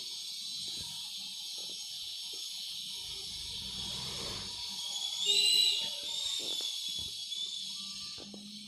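Steady background hiss with a few faint knocks, and a brief high whistling tone that rises and falls about five seconds in.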